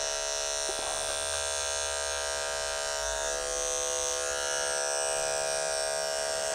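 Electric dog-grooming clipper running with a steady hum as it trims the fur between a dog's paw pads.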